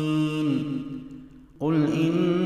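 A man's voice reciting the Quran in a melodic chant: a held final note fades away, there is a brief breath pause about a second and a half in, and the recitation starts again with a gliding phrase.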